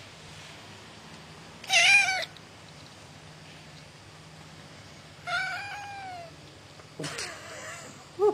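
Grey male cat meowing three times: a loud wavering meow, then a longer meow that falls in pitch, then a softer, breathier one near the end.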